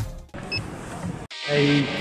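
Background music fading out, a short stretch of quieter room noise with a brief high beep, then an abrupt cut to a voice over steady background hubbub.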